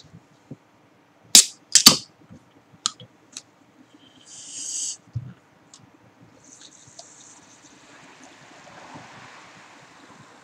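Aluminium can of vodka-and-ginger-ale chuhai being opened: two sharp clicks of the pull tab cracking the seal about a second and a half in, then a short hiss of escaping gas. From about six and a half seconds in, a steady fizzing hiss as the carbonated drink is poured into a glass.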